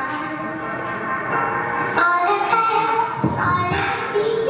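Hip-hop backing track starting up over the PA, with held melodic notes and a deep bass swell near the end, before any rapping.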